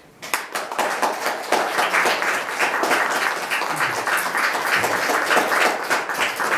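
Audience applause: dense, steady clapping that breaks out suddenly and keeps going.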